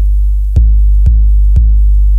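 Dubstep track: a loud, steady sub-bass drone with a short, sharp hit about twice a second, starting about half a second in.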